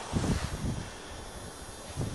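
Wind on the microphone with rustling handling noise and a few soft low thumps in the first half second, settling into a steady faint hiss.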